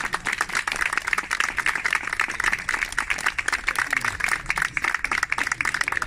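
A small crowd applauding: many hands clapping in a dense, steady patter.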